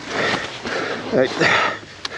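A person breathing hard, two heavy, noisy breaths with a short spoken word between them, typical of exertion after picking up a dropped motorcycle.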